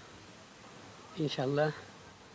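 A man speaking a short phrase a little past halfway through, with a quiet pause before it.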